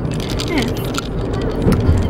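Car cabin noise while driving: a steady low rumble from the road and engine, with faint voices over it.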